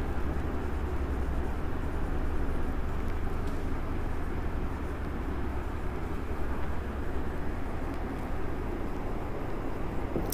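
A steady low rumble of background noise, with no distinct events standing out.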